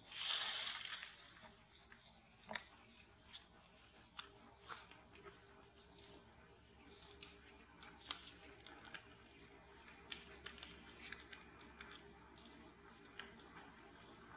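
Macaques handling each other in a tree. A short rustling burst opens the sound, then soft scattered clicks and rustles follow, the sharpest at about two and a half seconds and at eight seconds.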